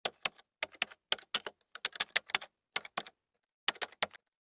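Typing keystrokes: a quick, irregular run of sharp clicks, about five a second, with a short pause about three seconds in before a few more strokes.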